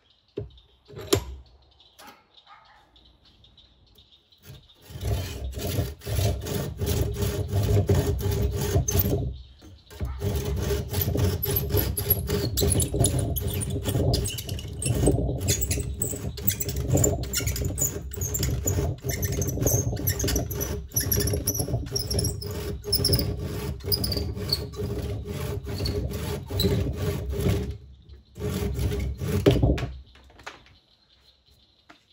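Hand saw cutting through the top of a wooden axe handle to trim it flush with the axe head, in quick, even back-and-forth strokes with a high squeal from the blade. The sawing starts about five seconds in, after a single sharp knock, and stops briefly twice, once near ten seconds in and once near the end.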